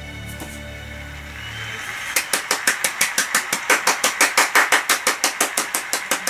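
One person clapping hands in quick, even applause, about five claps a second, starting about two seconds in as the last low notes of music fade out.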